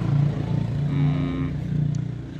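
A motor running steadily with a low, slightly pulsing hum.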